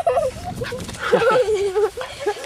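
Portuguese Water Dog puppy making high-pitched play vocalizations: short yips, then a longer wavering whine-like cry in the second half.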